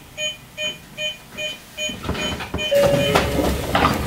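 Short electronic beeps repeating evenly, about two and a half a second. About two-thirds of the way in, a louder rush of noise with a steady tone covers them.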